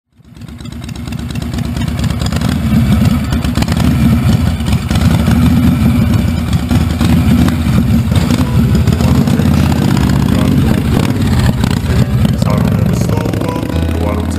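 Harley-Davidson V-twin motorcycle engine running loud, with a rapid low firing pulse, fading in over the first couple of seconds.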